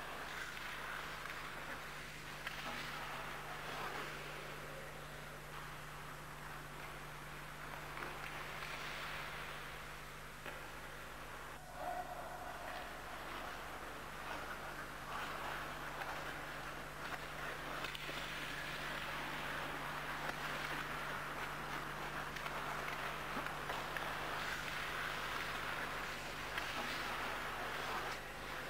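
Ice hockey skates scraping and gliding on ice in waves that rise and fade every few seconds, with a few faint stick-and-puck clicks, over a steady low electrical hum.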